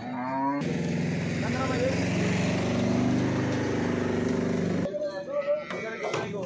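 A motor vehicle's engine running close by, a steady low hum with hiss that cuts in suddenly about half a second in and stops abruptly near the end, with people's voices around it.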